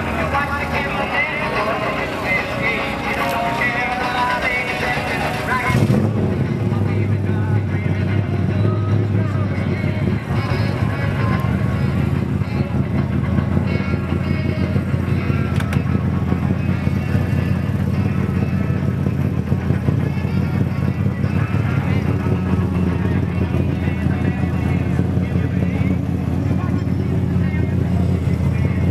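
Music plays for about the first six seconds, then cuts suddenly to a vehicle engine running steadily with a low rumble, with people's voices around it.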